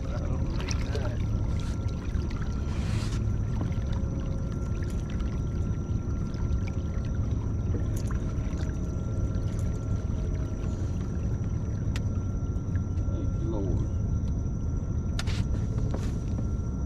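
Steady low rumble of a fishing boat's surroundings on the water, with a faint steady high whine above it. A few sharp clicks stand out, and a faint voice is heard briefly near the start and again near the end.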